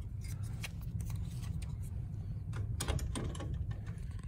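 Light plastic clicks and handling taps from a printhead being brought to the open carriage of a wide-format inkjet printer, a few sharper clicks about three seconds in, over a steady low hum.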